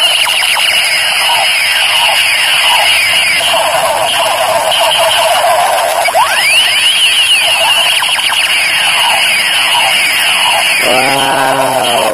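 Battery-powered Transformers toy gun playing its electronic sound effects: a loud, continuous warbling of laser-like sweeps that rise and fall, with the cycle starting over about halfway through. It stops about eleven seconds in.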